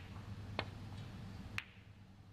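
Snooker cue tip striking the cue ball about half a second in, then a sharper, louder click about a second later as the cue ball hits a red, over a steady low hum.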